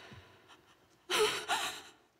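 A woman gasping twice in distress, about a second in: two short, sharp, breathy gasps with a wavering pitch, as she cries.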